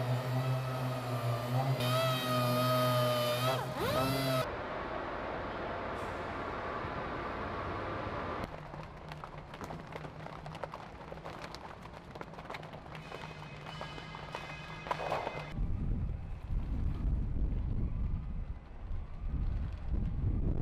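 Industrial site sound. A steady machine hum with a whine runs for the first few seconds, then a quieter hum with scattered clicks and vehicle noise follows. About three-quarters of the way in, a low wind rumble on the microphone takes over.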